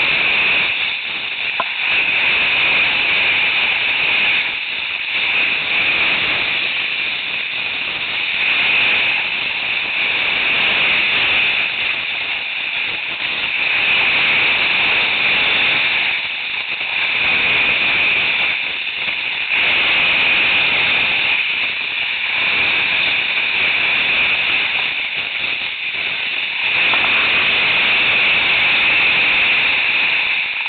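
Loud rushing hiss of skiing on snow, swelling and fading every couple of seconds.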